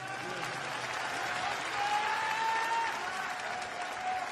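Large arena crowd applauding steadily.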